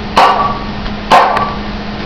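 Two sharp hammer taps on the mouth of a glass wine bottle, about a second apart, each leaving a short ringing tone from the glass.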